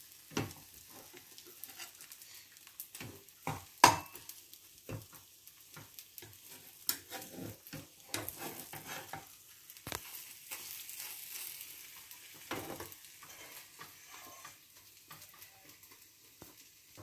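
An egg omelette sizzling quietly in a frying pan while a metal slotted spatula scrapes and taps against the pan, lifting and folding it, with a sharp tap about four seconds in.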